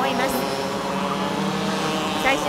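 Racing kart engines running at high revs, a steady buzz whose pitch shifts slightly as karts pass through the corners.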